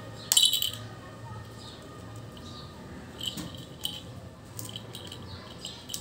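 Alexandrine parakeet biting and handling a hollow plastic ball toy: a few sharp clicks and clacks of beak on plastic, the loudest about half a second in, with faint chirps in between.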